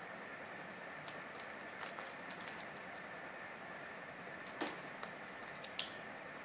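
Faint handling sounds of wet felting: a few scattered light clicks and soft wet rustles as fingers lift and flip wet wool and plastic resist pieces on bubble wrap, over a steady low hiss.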